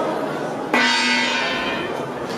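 Boxing ring bell struck once, a little under a second in, then ringing on and fading: the signal to start the round.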